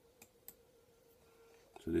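Two quiet computer mouse clicks about a third of a second apart, over a faint steady hum.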